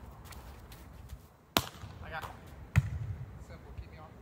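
A volleyball struck twice by hand. A sharp slap about a second and a half in is the serve, and a second, heavier hit comes about a second later.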